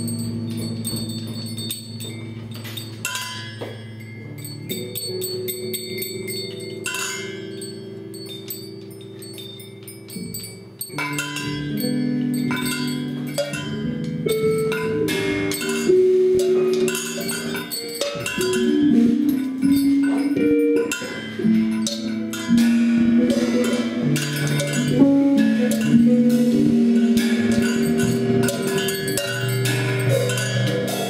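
Live instrumental music from a band of electric guitar, keyboard and drum kit: held low notes with chime-like ringing, growing louder and busier about eleven seconds in, with quickly changing notes and percussion strikes.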